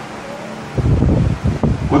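A man's breath striking a handheld microphone held at his mouth: low rumbling puffs starting under a second in.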